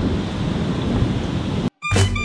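Wind rumbling on a camera microphone, a steady low noise without speech, cutting off abruptly near the end, where music starts.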